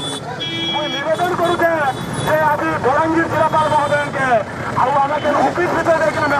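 A person speaking in a high, raised voice, with traffic noise beneath it.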